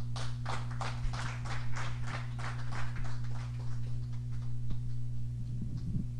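A small audience clapping, a light patter of about three claps a second that runs on and stops just before the next speaker begins, over a steady low electrical hum.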